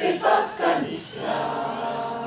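Mixed choir of men and women singing a cappella: a few short sung syllables, then one held chord that slowly fades.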